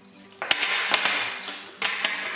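Metal-bladed marking-out squares being handled on a workbench top: a sharp knock about half a second in, a second or so of scraping and rattling, then another knock near the end.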